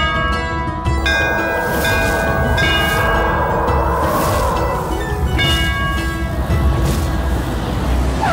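Background score music: held chords over a deep, steady low drone, with a swell of noise in the middle and light high strikes.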